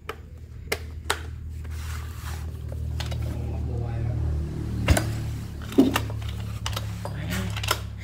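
Scattered clicks and light knocks from hands working the controls and plastic housing of a Stihl 066 Magnum chainsaw, with one sharper knock about five seconds in, over a steady low hum.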